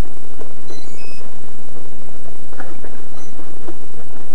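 Steady loud hiss with faint handling sounds as a battery and its wire leads are fitted by hand onto a quadcopter frame.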